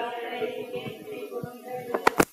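Voices singing a chanted liturgical response in long held notes, following the spoken doxology. A sharp microphone knock comes at the very end.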